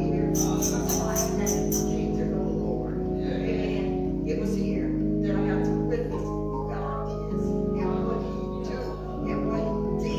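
Electric keyboard holding sustained chords that change every second or two, with indistinct voices over it and a short run of quick high clicks in the first two seconds.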